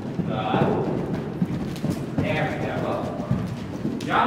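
Hoofbeats of a horse cantering over a small jump on soft indoor-arena footing: irregular dull knocks as it takes off, lands and canters away.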